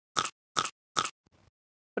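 Transition sound effect: three short, crisp clicks about 0.4 s apart, followed by a very faint tick.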